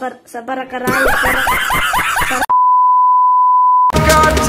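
A boy's voice briefly, then about a second and a half of loud, fast chattering sound with quickly repeated rising sweeps, then a single steady high beep, a censor-style bleep tone, held for about a second and a half before it cuts off suddenly.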